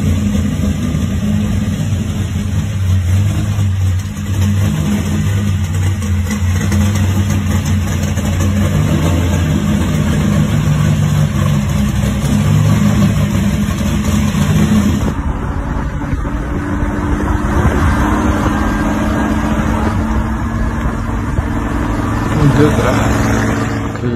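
Rat-rod early-1960s Corvette's V8, with an intake poking up through the hood, running steadily with a low, even engine note; its tone shifts about two-thirds of the way through.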